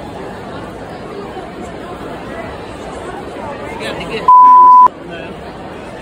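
Chatter of a crowded convention hall, cut a little over four seconds in by a loud, steady single-tone censor beep about half a second long, dubbed in over the sound to hide words for privacy.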